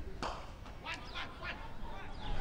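Faint, distant voices calling across an open cricket ground, with no loud event.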